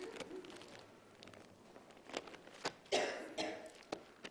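Soft rustles and small clicks of Bible pages being turned in a quiet church room, with a single cough about three seconds in.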